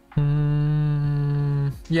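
A man humming one long, steady thinking "hmm" at a level pitch, lasting about a second and a half, then stopping just before he speaks again.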